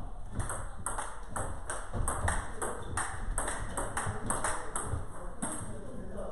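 A table tennis rally: the ball clicks sharply off the paddles and the table in quick succession, about three clicks a second, and the rally stops about five and a half seconds in.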